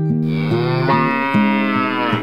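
A single long cow moo, about two seconds, sounds over a plucked-string intro jingle, entering just after the start and fading near the end.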